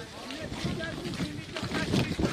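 Indistinct voices of people talking in the background, with wind noise on the microphone.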